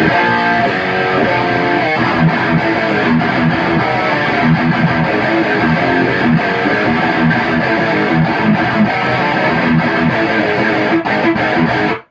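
Electric guitar played through a KHDK overdrive pedal into the crunch channel of a Bogner Atma, giving a distorted tone. It opens with held chords and moves into a busier riff, then cuts off suddenly at the end.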